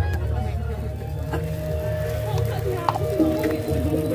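Jaranan gamelan music playing with steady held tones over a dense low rumble, mixed with voices of the crowd.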